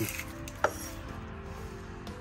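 A cleaver cutting an onion on a wooden cutting board, with one sharp knock of the blade on the board about two-thirds of a second in, over quiet background music.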